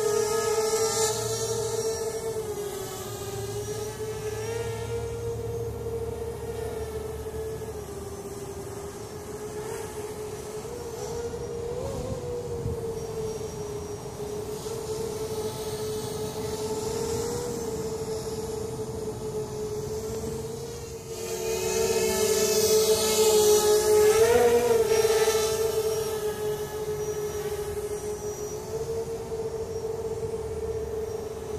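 Hovership MHQ 3D-printed quadcopter in flight: a steady whine from its electric motors and propellers, the pitch wavering slightly as the throttle changes. It gets louder for a few seconds past the middle, with a brief rise in pitch at its loudest.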